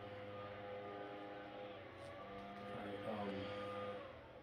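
A steady mechanical hum made of several held tones, shifting slightly about halfway through.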